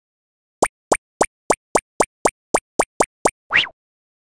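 Cartoon sound effects: a run of eleven quick plops at nearly four a second, then a short rising swoop near the end.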